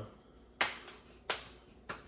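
Three sharp hand smacks, evenly spaced about two-thirds of a second apart.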